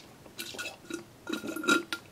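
Drink being sucked through a straw from a can: a few short slurps, the longest one about a second and a half in.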